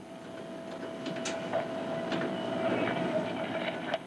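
Irregular mechanical clatter of a typewriter-style keyboard terminal being typed on, with sharp key clicks and a steady hum underneath.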